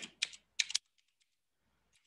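A few quick computer keyboard key clicks in the first second, as a short word is typed.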